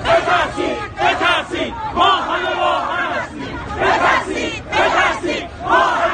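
A crowd of protesters shouting together in repeated loud bursts of many voices, about one phrase a second, like a chant.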